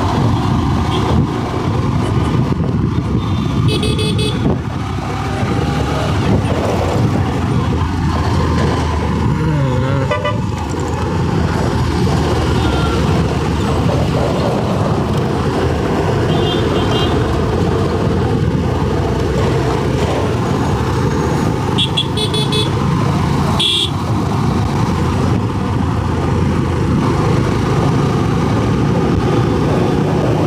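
Steady road and wind noise from a Honda SP125 motorcycle riding in highway traffic, with brief vehicle horn toots sounding several times.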